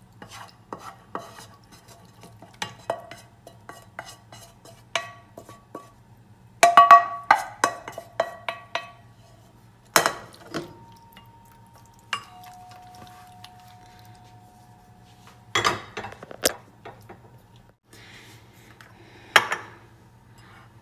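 A wooden spatula and frying pan scrape and knock against a ceramic baking dish as caramelized onions and mushrooms are scraped out and spread. There are irregular clicks and clinks, a run of louder ringing clinks about a third of the way in, and a few sharp knocks near the middle and the end.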